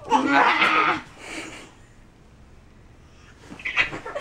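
A baby's wordless voice: a loud squeal and babble in the first second, trailing off into fainter sounds, then a short burst of sound just before the end.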